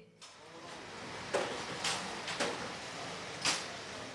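Outdoor street noise with a vehicle engine running, broken by four short knocks or clatters about half a second to a second apart.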